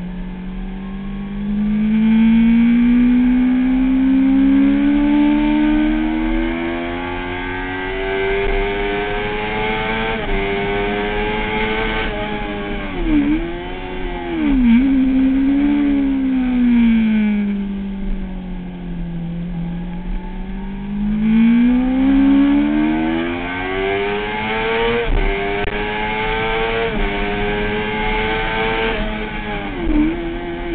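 Kawasaki ZX-6R inline-four sportbike engine, heard from onboard, pulling hard with a long rising pitch. About halfway there are two quick sharp dips in pitch as it downshifts into a corner. The revs then fall away and climb steadily again, with another downshift near the end. Wind rush rises and falls with the speed.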